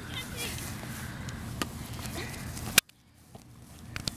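Open-air ambience of a youth soccer game with faint voices, and a single sharp knock about a second and a half in. Near three seconds in, a loud click is followed by a sudden dropout to near silence that fades back in, the mark of an edit in the audio.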